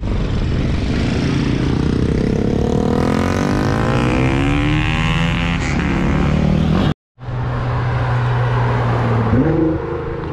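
A motorcycle and a small hatchback drive past close by, their engines and tyre noise swelling and changing pitch as they go by. The sound drops out briefly about seven seconds in. Then a car engine runs at a steady note and revs up sharply near the end.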